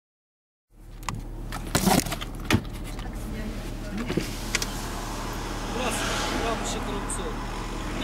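Car engine idling, a steady low hum heard from inside the cabin, starting suddenly under a few sharp knocks and clicks in the first two seconds.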